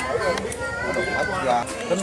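People talking, with voices overlapping in the background.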